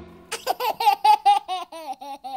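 A young child laughing: a quick string of short, pitched 'ha' sounds, about five a second, starting a moment in.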